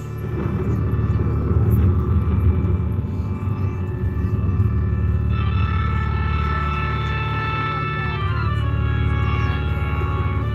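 A sustained low musical drone with held chord tones above it; a brighter layer of high held tones comes in about five seconds in, and part of it drops out near eight seconds.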